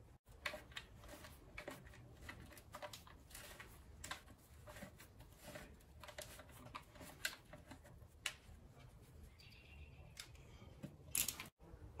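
Faint, scattered light clicks and taps of an Allen key being fitted to and turned in a bolt on a motorcycle engine side cover, with a sharper click near the end.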